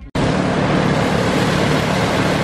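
Engine-driven rice thresher running steadily: a constant low engine hum under a loud, even rushing noise, starting abruptly.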